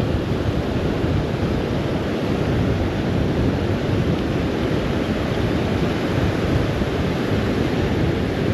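Rough surf breaking and washing up the beach, a steady rushing noise, with wind rumbling on the microphone.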